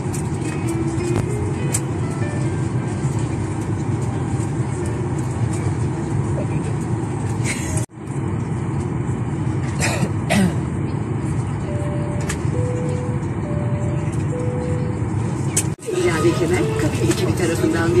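Steady low rumble of an airliner cabin, with indistinct voices and faint music underneath. The sound drops out briefly twice.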